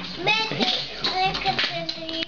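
A baby's high-pitched vocal sounds, short rising and falling squeals and hums, with a few sharp slaps or claps of hands.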